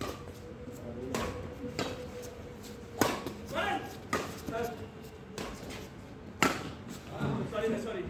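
Badminton rackets hitting a shuttlecock in a doubles rally: a series of sharp strikes about a second apart, the loudest about three and six and a half seconds in. Men's voices call out between the shots.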